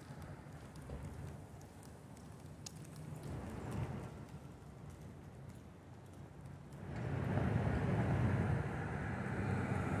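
Outdoor city street background with traffic noise: a low, even hum of passing vehicles that swells briefly about four seconds in and grows louder from about seven seconds in.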